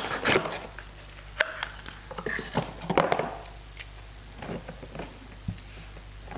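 Cardboard packaging rustling and scraping, with scattered light knocks, as a metal spray gun is lifted out of its box and laid on a table.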